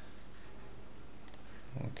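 Steady low hiss of room tone, with a single short mouse click a little after one second in.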